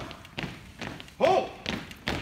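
A formation of recruits marching with boots striking the floor in step, about two steps a second, and one loud, short shouted call about a second in.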